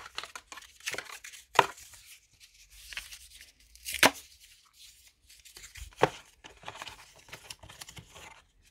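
Cardboard packaging of a Samsung Galaxy Note 10+ box being handled: a black accessory insert rustling and scraping as it is fitted back into the box, with three sharp taps about one and a half, four and six seconds in, the one at four seconds the loudest.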